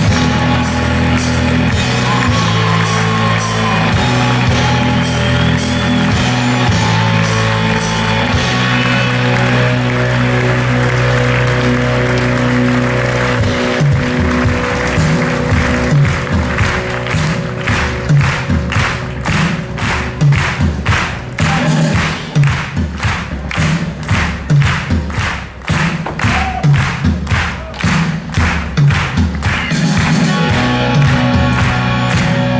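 A live rock band plays curtain-call music under a theatre audience's applause. For the first half the band holds sustained bass notes and chords. From about halfway in, the music settles into a steady beat and the clapping falls into time with it, in a regular rhythm.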